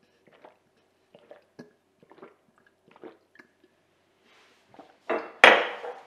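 A person gulping down a jar of diluted apple cider vinegar in about six separate swallows. Near the end the drinking stops and a few spoken words come with a loud, sudden sound.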